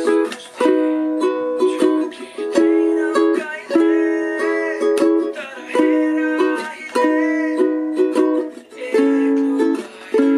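Ukulele strummed in a steady down-up rhythm, changing chord every couple of seconds through a progression of E, B and C sharp minor chords.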